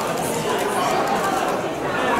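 Several voices talking over one another: lively chatter.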